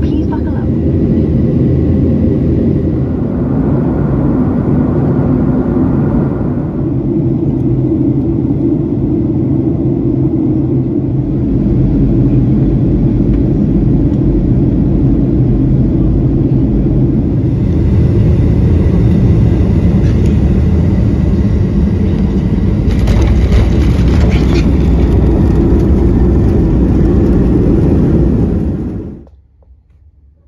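Steady, loud, low rumble of a jet airliner's engines and airflow heard from inside the cabin in flight, cutting off suddenly just before the end.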